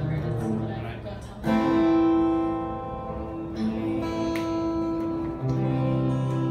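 Acoustic guitar chords struck and left to ring, a strong new chord about a second and a half in, then further chord changes.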